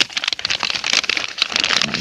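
Woven-plastic mineral salt bag crinkling and rustling as a hand digs into it, a dense run of crackles.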